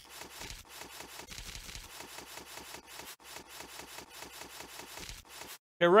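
Rapid, even run of clicks, about eight a second, as a chess game is stepped back move by move on a computer board. The clicks stop abruptly about five and a half seconds in.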